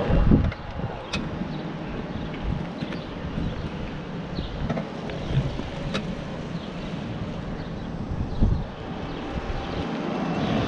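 A golf cart driving along a sandy road, a steady rumble of tyres and motion with wind buffeting the microphone. Two louder low thumps come just after the start and near the end.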